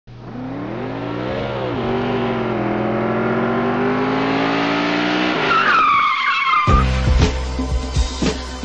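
An engine-like drone rises in pitch once and then holds, followed by a high squealing glide. It is cut off when a funk beat with heavy bass and drum hits starts about two-thirds of the way in.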